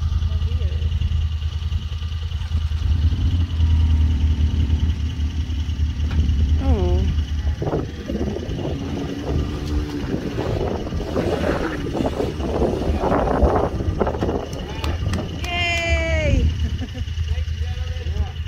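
Side-by-side UTV engine running with a steady low rumble, getting louder and rougher for a few seconds past the middle as the rolled Can-Am crawls down the rocks. Voices call out, one long falling shout near the end.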